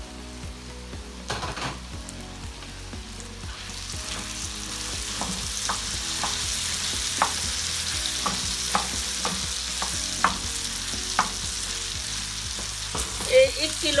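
Raw minced meat sizzling on a hot flat iron tawa, the hiss swelling a few seconds in and holding. A wooden spoon scrapes and taps against the pan as the keema is stirred into the masala.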